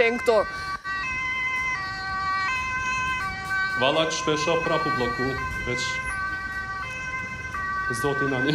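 An emergency vehicle's two-tone siren, stepping back and forth between a higher and a lower pitch about every three-quarters of a second. A voice speaks briefly about four seconds in.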